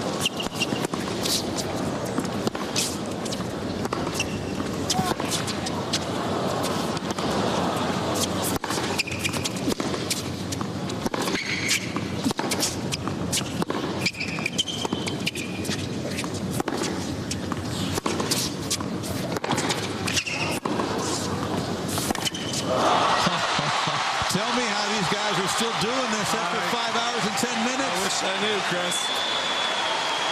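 A long tennis rally on a hard court: repeated sharp racket strikes on the ball, with sneakers squeaking on the court surface under a low stadium crowd murmur. About 23 seconds in, the crowd breaks into loud cheering, applause and shouting as the point ends.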